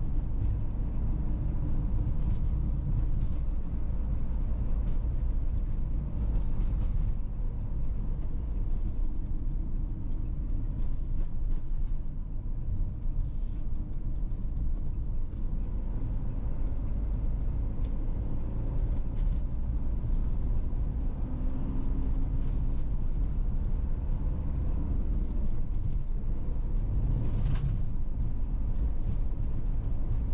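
Steady low rumble of a car driving on an asphalt road: tyre and engine noise heard from inside the moving car. There is a brief swell of noise near the end.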